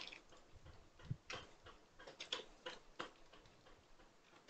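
Faint, scattered clicks from a computer mouse and keyboard: several separate short ticks over a few seconds, from key presses and mouse-wheel scrolling.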